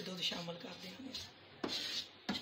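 A wooden spatula scraping and stirring desiccated coconut roasting in butter in a nonstick frying pan, with one sharp scrape about one and a half seconds in.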